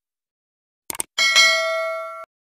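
Sound effects for a subscribe-button animation: a quick double mouse click about a second in, then a bright notification-bell ding that rings on and slowly fades.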